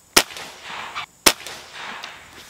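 .22 caliber pre-charged air rifle firing two shots about a second apart, each a sharp crack with a short fading tail.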